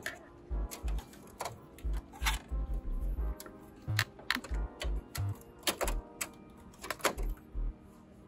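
Irregular plastic clicks and knocks from the duplex-unit feed roller assembly of an HP OfficeJet 9010 printer being pushed and seated into its plastic housing by hand, over faint background music.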